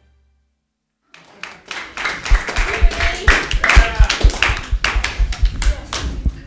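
Silence for about a second, then hand clapping mixed with voices cheering as the dance ends.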